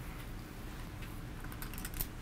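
Poker chips clicking together in quick, light clicks as a player handles them at the table, the clicks bunching up near the end.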